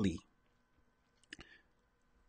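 The end of a man's word into a close microphone, then a quiet pause broken about a second and a half in by a brief mouth click and a smaller second click, over a faint steady hum.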